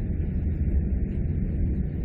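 Steady low rumble with a faint hiss: the recording's background noise between sentences.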